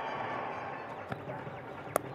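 Steady stadium crowd noise, with a single sharp crack of bat hitting cricket ball just before the end.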